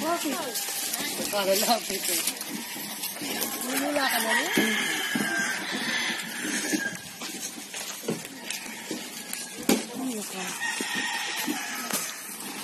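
Voices of a group of people talking, with one long drawn-out high animal call about four seconds in.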